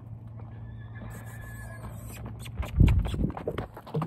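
Horse hooves and a person's footsteps crunching on loose rocky gravel, picked up by a microphone at ground level. The steps start a little past halfway and grow loud, with a heavy thump near 3 s as they pass closest.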